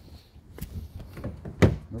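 A car door gives one sharp thunk near the end as it is tried while still locked, after a faint click about half a second in.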